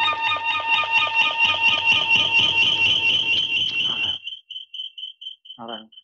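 A metal bell ringing rapidly and continuously with a clear, high, many-toned ring, about four seconds in all. It then stops and rings out, its high tone pulsing as it fades.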